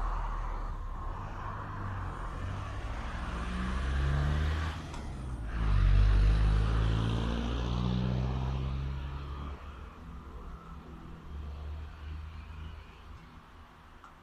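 A motor vehicle driving past on the road, its engine note shifting in pitch as it pulls through the gears; it builds to its loudest about six seconds in and fades away after about nine and a half seconds.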